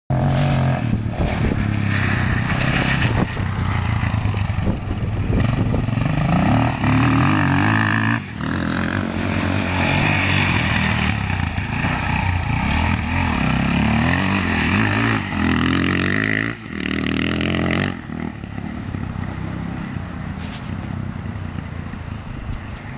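Off-road dirt bike engine revving up and down as it is ridden, pitch climbing and dropping with the throttle and gear changes, with brief cuts in power twice. About 18 seconds in it becomes quieter and more distant.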